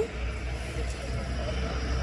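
Distant road traffic: a low, steady rumble.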